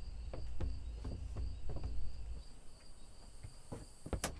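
Crickets chirping in a steady, evenly pulsing trill. There are a few soft clicks, and a low rumble stops about halfway through.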